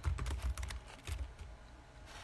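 Fingers tapping on a device held close to the microphone: a run of light, irregular clicks, thicker in the first second and thinning out, over a low handling rumble.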